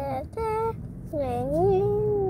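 A young child singing wordless 'da da' syllables: a short held note, then about a second in a long note that wavers up and down in pitch.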